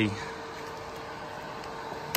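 DeWalt DCE512B 20V brushless battery fan running on its highest setting: a steady rush of air with a constant hum.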